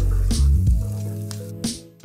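Background music with sustained notes, over a light sizzle of diced onions sautéing in olive oil and a few scrapes of a wooden spoon stirring them in a non-stick pan.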